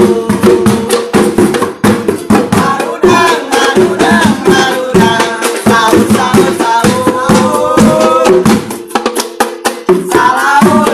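Group singing with hand-struck percussion, many sharp knocks in quick succession under the voices: the music of a Ramadan sahur patrol, played through the streets to wake people for the predawn meal.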